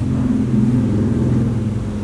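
A steady, low, engine-like hum that fades slightly toward the end.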